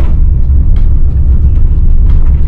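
A loud, steady low rumble.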